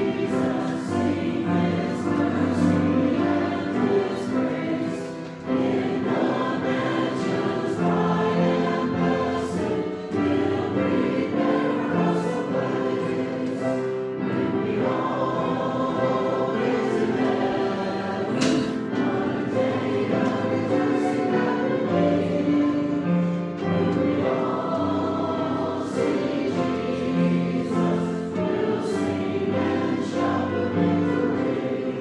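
A group of voices singing a hymn together, sustained and continuous.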